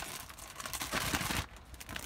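Plastic sticker packet crinkling and crackling as it is shaken by hand, loudest for about half a second near the middle.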